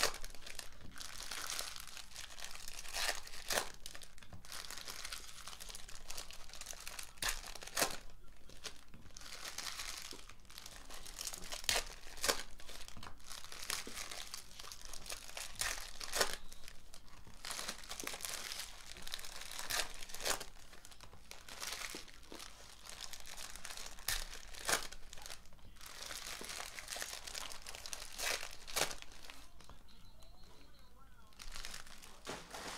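Foil trading-card pack wrappers being torn open and crinkled by hand, with frequent sharp rips.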